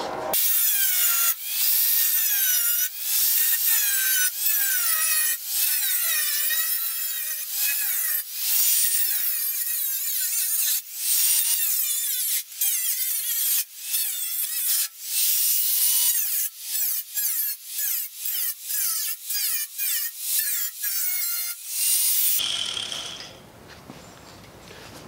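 Angle grinder cutting through a steel car fender, its whine wavering up and down in pitch as the wheel loads in the cut. It is broken by many short gaps, more often in the last few seconds, and stops about two seconds before the end.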